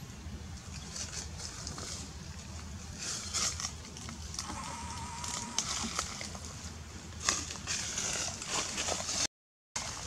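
Macaques moving through tree branches: short bursts of rustling and crackling over a steady low rumble, with a faint warbling call midway. The sound drops out briefly near the end.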